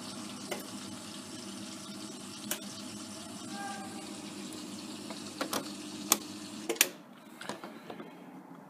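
Faulty Hotpoint Aquarius WMA54 washing machine running with a steady sound of water in it. The sound cuts off about seven seconds in, amid several sharp clicks as its programme dial is turned. The machine will not turn its drum or drain properly, a fault the owner puts down to worn bushes or the motor.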